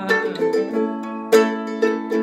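Ukulele strummed with chords ringing on between strokes, with sharp strums near the start and twice more in the second half.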